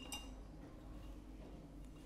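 A faint single clink of glassware against a glass beaker at the very start, ringing briefly, then quiet room tone.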